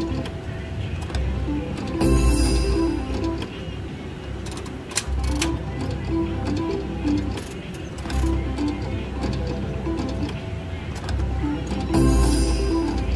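Slot machine reel-spin music and sound effects: a short jingle of notes over a low thump that starts again with each new spin, about every three seconds. A sharp click falls about five seconds in.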